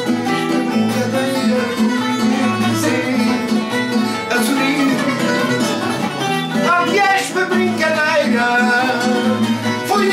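Live fado: a man singing, accompanied by a Portuguese guitar and a classical guitar.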